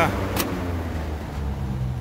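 A single sharp switch click about half a second in as a rotary switch on the 1978 chiller's control panel is turned to shut it off, over the chiller's steady low machine hum, which carries on.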